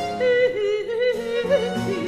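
Soprano voice singing a Baroque cantata line with wide vibrato, over sustained low notes from a small period-instrument ensemble.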